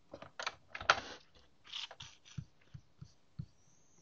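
Computer keyboard and mouse being worked: scattered clicks and taps, with a louder rustling burst about a second in and a few dull low knocks in the second half.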